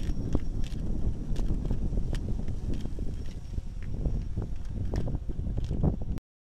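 Running footsteps on grass, about three thumps a second, over a steady low buffeting of wind on the microphone.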